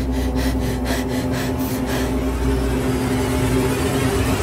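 Suspense underscore: a low sustained drone with fast ticking pulses, about five a second, that stop about two seconds in. A hissing swell then rises toward the end.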